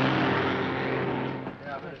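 Heavy truck passing close by: a steady engine drone with road noise that fades out about one and a half seconds in. A man's voice begins just before the end.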